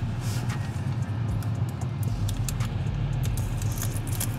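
Protective plastic film crinkling and crackling in scattered short bursts as it is peeled off aluminium pedal covers, over a steady low hum.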